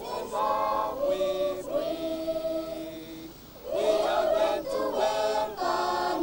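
A choir of schoolchildren singing together in held notes, with a short pause for breath a little past halfway through.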